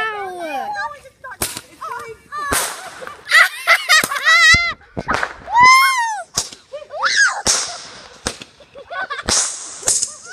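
Small consumer fireworks going off: a string of sharp pops and cracks, with warbling whistles that rise and fall between them, and hissing bursts near the end.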